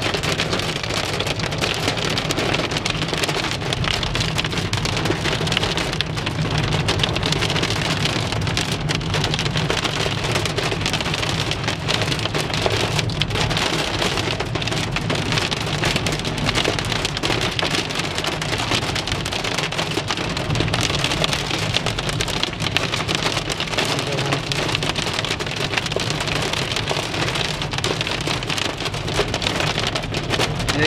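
Heavy rain drumming steadily on a car's roof and windscreen, heard from inside the moving car, with a steady low road and engine rumble underneath.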